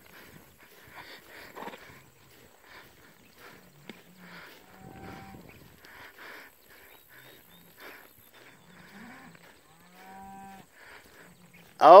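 Cattle, cows with calves, mooing faintly with a few low calls spread out, as the herd is driven by a herding dog.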